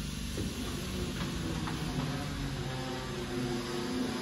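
A steady low electrical hum made of several even tones, with a few faint ticks over it.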